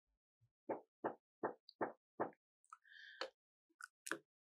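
Five faint, soft clicks, evenly spaced about three a second, then a few brief, thin high tones and one more click near the end.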